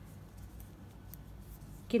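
Faint small clicks and rubbing of metal knitting needles working a stitch through a fabric-strip yarn.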